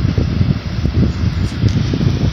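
Low, uneven rumble of moving air buffeting a phone microphone, typical of a room fan or air conditioner running near it.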